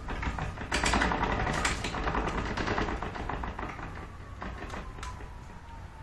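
Ratchet on a bow-tillering tree clicking rapidly as it winds the bowstring of a heavy bow down toward a 20-inch draw under about 60 pounds of load. The clicks come thick and fast, then thin out to a few single clicks near the end.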